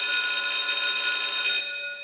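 A loud alarm-like ringing made of several high steady tones, stopping about one and a half seconds in and fading away.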